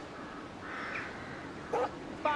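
A crow caws once near the end, over a faint outdoor background.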